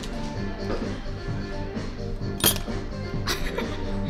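Background music playing steadily, with a sharp clink of a fork against a plate about halfway through and a softer clink just after.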